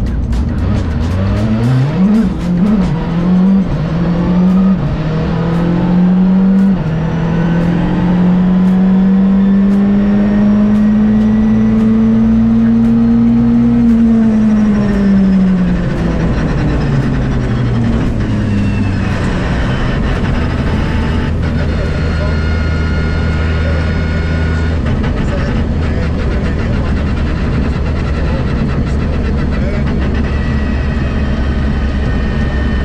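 Rally car engine heard from inside the cabin: the revs climb in several quick steps through gear changes, then one long pull rises steadily before falling away as the car slows. It then settles into a lower, steadier drone, with a thin high whine joining in about two-thirds of the way through.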